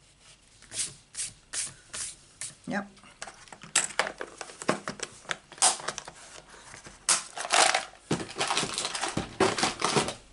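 Eraser rubbing pencil marks off card stock in short scrubbing strokes, about two or three a second, followed by louder rustling and handling of card and paper near the end.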